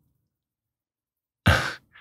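Dead silence, then about a second and a half in, a man's short, audible intake of breath through the mouth before he speaks again.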